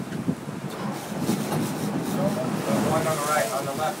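Wind on the microphone over a sportfishing boat running at sea, with voices shouting indistinctly in the second half.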